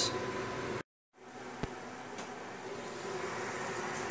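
Pot of tomato sauce boiling on the stove: a steady hiss with a couple of faint pops. The sound drops out completely for a moment about a second in.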